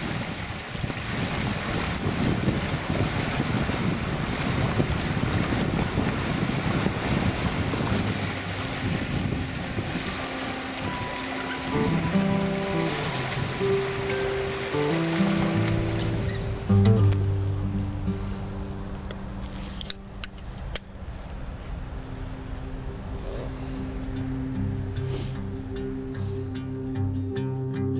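Fast-flowing river water rushing steadily. Soft music fades in about halfway and carries on alone after the rushing sound drops away.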